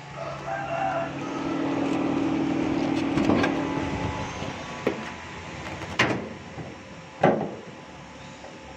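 A steady low hum swells for a few seconds and fades. Sharp clicks and knocks come from a car bonnet being unlatched and raised and its prop rod being set: a single knock a little over three seconds in, then a few more spaced over the last half.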